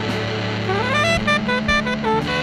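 Live math-rock band music: electric guitar and saxophone lines over a held bass note. About halfway through a note slides upward, followed by a run of quick short notes.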